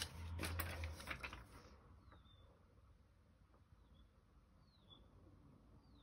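Soft rustling and light taps of a plastic laminating pouch and card being handled on a desk for about the first second and a half, then quiet with a few faint, short bird chirps.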